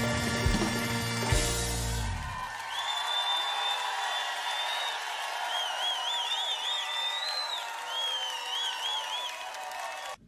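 A live bagpipe rock band of pipes, drum kit and electric guitars ends a tune on a final held chord about two seconds in. The crowd then cheers and applauds, with several people whistling.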